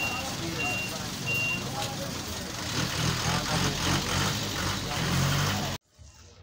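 Vehicle reversing alarm beeping about three times every two seconds, stopping about a second and a half in. Under it are a running engine and street noise with voices. The sound cuts off abruptly just before the end.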